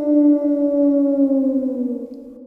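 A long canine howl: one held call that sags slowly in pitch and begins to die away near the end.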